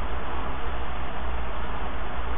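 Steady hiss with a low hum underneath: the background noise of a desk recording setup between spoken lines.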